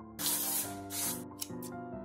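Aerosol spray can hissing in two bursts of about half a second each, followed by two short puffs, over soft piano background music.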